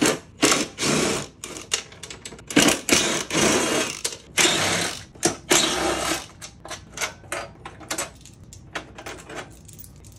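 Craftsman cordless impact driver hammering out 10 mm screws from a truck's plastic bumper cover in a string of short loud bursts over the first six seconds or so. It is followed by lighter scattered clicks and rattles as parts are handled.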